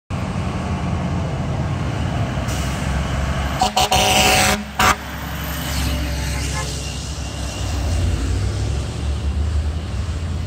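Heavy emergency vehicles' engines running with a steady low rumble. About three and a half seconds in, a vehicle's air horn sounds: a short toot, a longer blast of about a second, then a brief last toot.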